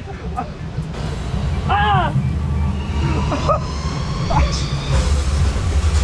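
Steady low rumble of a round river-rapids raft boat running through churning water, with water rush and wind on the camera microphone, heavier near the end. A rider gives a short 'oh' and a laugh about two seconds in.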